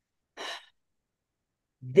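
A woman's single short, audible breath between spoken sentences, a brief hiss with no voice in it, lasting about a third of a second. Otherwise there is dead silence until her speech resumes at the very end.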